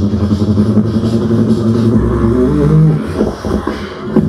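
Two beatboxers performing together through microphones: a sustained deep vocal bass drone, with a gliding bass line a little past halfway, thinning to quieter, sparser percussive sounds in the last second.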